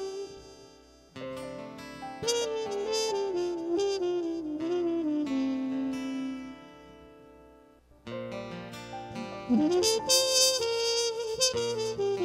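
Solo saxophone playing a slow melody in phrases over a held lower note. The first phrase descends and fades out by about two thirds of the way through, and a new phrase starts after a short gap with a bend up in pitch.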